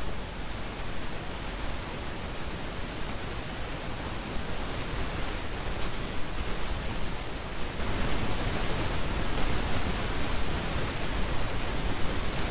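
Steady hiss of recording noise spread evenly across the whole range. It starts abruptly and slowly grows louder.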